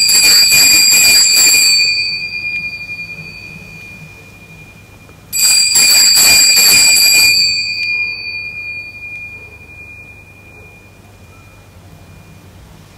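Altar bells (sacring bells) shaken twice, about five seconds apart, each peal fading away over a few seconds: the bell rung at the elevation of the chalice after the consecration.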